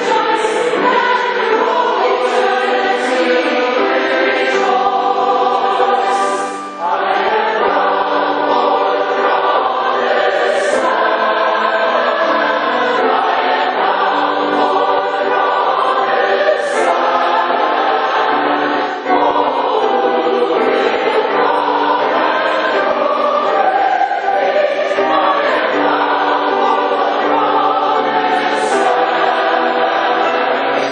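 Large mixed SATB choir singing a spirited hymn arrangement on traditional American melodies, with piano accompaniment. The singing is continuous, with short breaks between phrases about six and nineteen seconds in.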